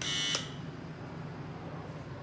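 Electric doorbell buzzer beside a room door, pressed once: a short, harsh buzz of about a third of a second right at the start. A low steady hum continues underneath.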